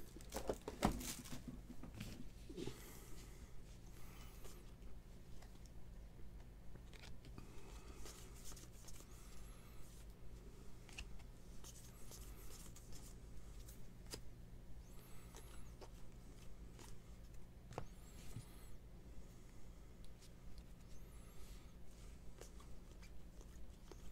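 Faint handling of a stack of baseball trading cards, the cards sliding over one another as they are flipped through, with soft clicks about once a second.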